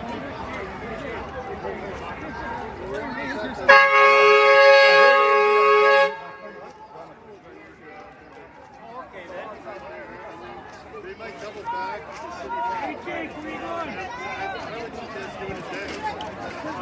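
A vehicle horn sounds one steady blast of about two seconds, a few seconds in, over the chatter of a crowd.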